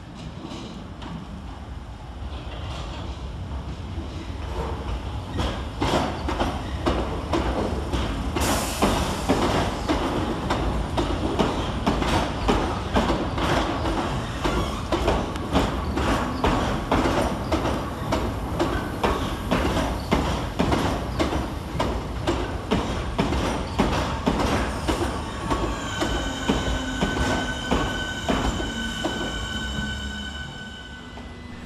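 Southeastern Class 466 and Class 465 Networker electric multiple unit running into the platform, its wheels clicking steadily over the rail joints as it passes. A steady high whine comes in near the end as the train slows.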